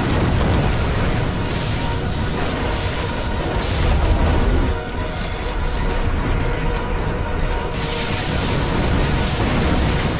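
Film soundtrack: a dramatic orchestral score over continuous explosions, booms and crashing wreckage, loud throughout with a deep rumble underneath.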